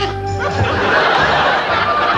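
Audience laughter swelling up about half a second in and holding, over steady background music.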